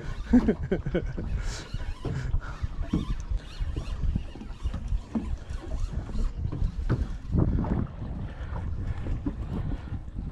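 Wind buffeting the microphone over water lapping against a boat's hull, with scattered small knocks.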